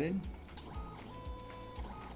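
Xerox VersaLink B405's document feeder and scanner running as it scans the second page of a two-sided document. It is a faint mechanical run with soft low pulses about twice a second and a brief steady tone in the middle.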